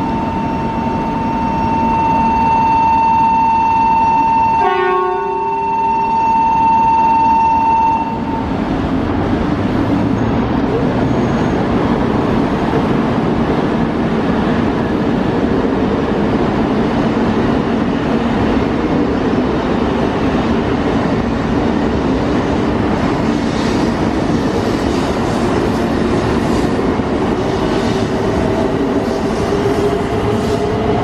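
A steady electronic warning tone sounds for about the first eight seconds, broken briefly near five seconds by a lower tone. Then an E2 series Shinkansen pulls out of the platform: continuous rumbling running noise from wheels and motors, with a rising motor whine near the end as it gathers speed.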